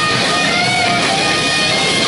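Live rock band playing loud, with electric guitars to the fore and held notes ringing over a dense wall of sound.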